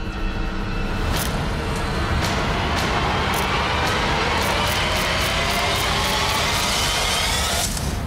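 Trailer score building to a climax: a dense rising swell with sharp hits that come faster and faster, cutting off abruptly near the end.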